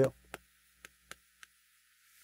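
Chalk tapping on a blackboard while a word is written: four short sharp clicks in the first second and a half, then quiet.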